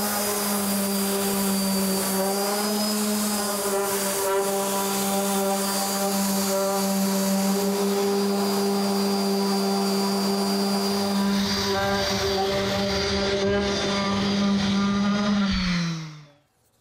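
Electric random orbital sander running at steady full speed with a loud, even hum while sanding a wooden cutting board with 100-grit paper. Near the end its pitch drops as it winds down and stops.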